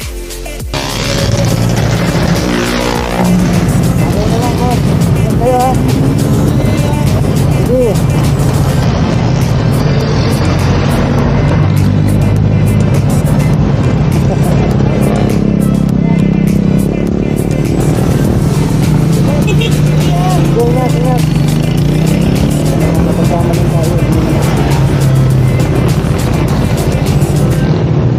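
Road traffic and a motor scooter's engine running, a loud steady mix, with background music and indistinct voices over it.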